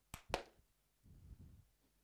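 Two quick hand claps, the second louder, given to trigger a clap-activated light switch (a sound sensor that recognises claps).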